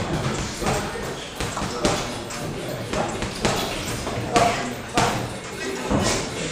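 Boxing gloves landing punches during sparring: sharp smacks roughly once a second over a steady background of voices in a large gym room.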